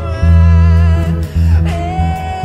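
Electric bass guitar playing long, low notes, two of them with a short break between, over a backing track of a slow song with a man's high, held singing.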